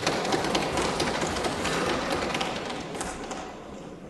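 Members of the house thumping their desks in welcome, a dense rattle of many knocks that thins out and fades near the end.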